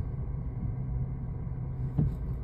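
A car's engine running at low speed, heard from inside the cabin as a steady low hum, while the car creeps through a parking manoeuvre.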